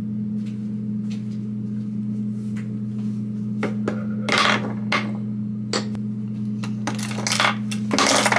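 Small plastic makeup items (lip balm tube, mascara, compact) clicking and clattering as they are handled and set down on a desk, with the loudest clatters about four and a half seconds in and near the end, over a steady low hum.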